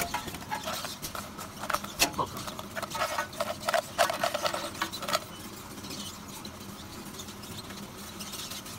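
Gummy bears shaken out of a plastic bottle onto a stainless-steel tray: a run of light taps and short squeaks for about five seconds. After that only a steady low machine hum remains.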